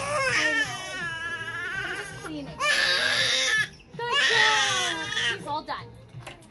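Five-month-old baby crying in pain while having her ears pierced: a long wailing cry, then a harsh, louder scream about two and a half seconds in, then another long cry that breaks into short sobs near the end.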